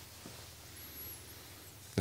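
Faint room tone: a low steady hiss and hum, with a brief faint high-pitched whistle about a second in.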